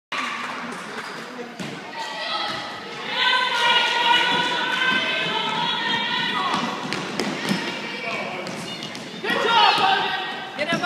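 Basketball bouncing and thudding on a hardwood gym floor amid shouting voices in the echo of a large gym. A long, steady held call runs from about three seconds in to past six seconds, and louder shouting starts near the end.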